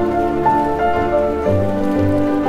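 Background music: a soft instrumental with sustained notes and chords that change every half second or so.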